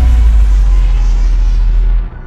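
Intro music sting ending on a loud, sustained deep bass rumble, with the higher sounds fading away above it; it drops off sharply at the end.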